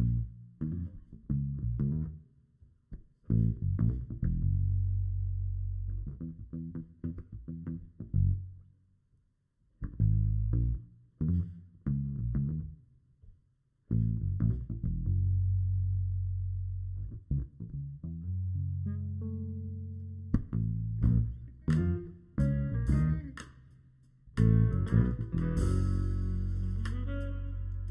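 Electric bass guitar playing a funky solo intro riff in short low phrases with brief gaps. Drums come in about twenty seconds in, and the rest of the band, horns included, joins near the end.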